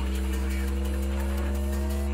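Hardtek DJ mix at a beatless passage: a steady, very deep bass drone under several held synth tones, one of them slowly rising in pitch.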